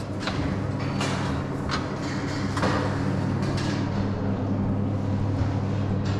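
A steady low mechanical hum with a few light knocks.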